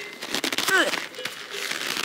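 A stuff sack holding a sleeping mat rustling and crinkling as it is handled and its drawstring opened, with many small crackles. A brief voice sound comes a little before the middle.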